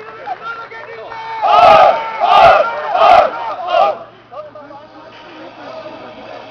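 Football players shouting a celebration chant in unison: four loud shouts about half a second apart, with people chatting before and after.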